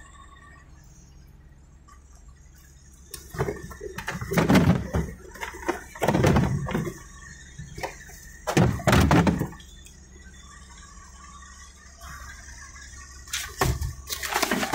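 Things being rummaged through and shifted in an old Volvo's trunk: clunks, rattles and scrapes of metal and rubber in three bursts a couple of seconds apart, with a short knock near the end.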